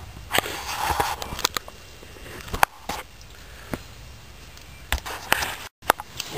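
Small wood campfire crackling: a handful of sharp, irregular pops over a faint hiss, with a short rustle about half a second in and the sound cutting out briefly near the end.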